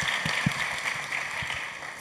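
Audience applauding after a reading, scattered hand claps over a steady patter that dies away toward the end.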